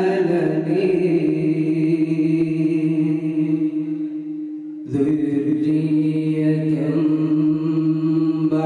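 Solo male Qur'an recitation (qira'ath), a long, melodically held note sung into a microphone. It fades to a short break just before five seconds in, then a new held phrase begins.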